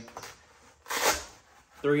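A short rustle of the vest's nylon fabric being handled, about a second in, as its carrier flap is lifted.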